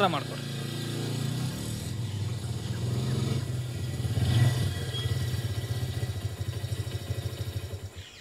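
Motorcycle engine running at low revs, a steady low drone with rapid, even exhaust pulses that grow more distinct in the second half, then stopping abruptly at the end.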